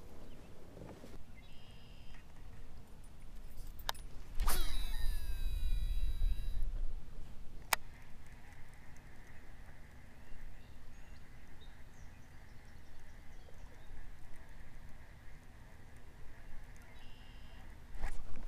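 A fishing reel cast and retrieve: about four and a half seconds in, a whirr of line paying off the spool that falls in pitch over about two seconds, a sharp click a little later, then a faint steady whirr of the reel being cranked in.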